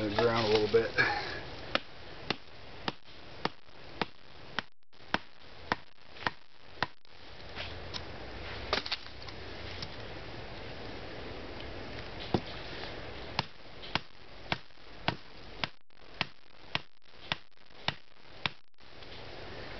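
A wooden stake, the Y-branch support leg of a camp table, being driven into the ground by striking its top with a hand-held rock: sharp knocks a little under two a second, in two runs of about ten with a pause of several seconds between.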